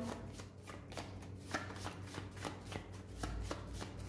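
A deck of tarot cards shuffled by hand: a fast, faint run of card flicks and clicks.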